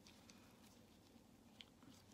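Near silence, with faint handling noise from a wet, coffee-soaked paper filter being squeezed in gloved hands, and one small click near the end.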